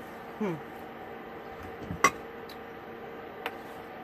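A ceramic rolling pin is set down on the counter with one sharp knock about two seconds in, followed by a lighter tap near the end. A steady low hum runs underneath, and a short 'hmm' comes at the start.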